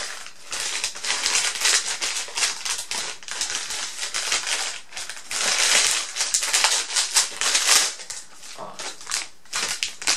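Packaging crinkling and rustling as a small parcel is torn open and unwrapped by hand, in irregular bursts, loudest about halfway through.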